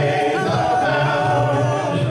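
Four men singing a gospel song in close harmony through microphones, holding long sustained notes.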